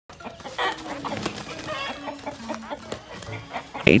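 Young chickens clucking and squawking in alarm as a hawk attacks them in their cage, a run of short, pitched calls.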